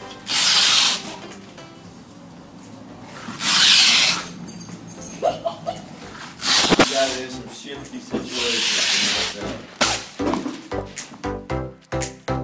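Masking tape and plastic film being pulled off a hand masking dispenser and laid along a truck bed's edge: four ripping pulls about three seconds apart, each lasting about a second, the third one shorter.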